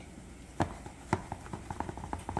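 A silicone spatula knocking and scraping against a thin plastic tub while soft ice cream is scraped off it: two firmer knocks about half a second and a second in, then a run of lighter taps.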